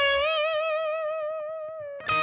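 Electric guitar holding a bent note at the 15th fret with a wavering vibrato, the note fading slowly as it rings.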